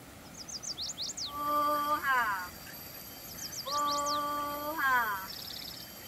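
Small birds chirping quickly and high, with a longer pitched call that holds one note and then sweeps sharply upward, heard twice. A fast trill comes near the end.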